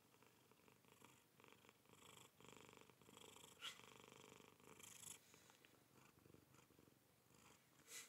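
Domestic cat purring faintly close to the microphone, in repeated passes about a second long, with one brief click about halfway through.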